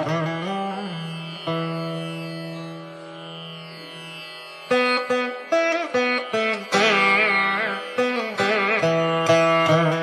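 Indian classical music on a plucked string instrument. A long note rings and slowly fades, then about halfway through a run of plucked notes begins, several of them bent in pitch.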